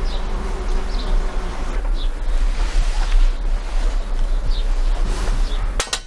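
Outdoor wind blowing on the microphone: a steady rumbling hiss, with a few faint short high chirps about once a second. It cuts off suddenly just before the end.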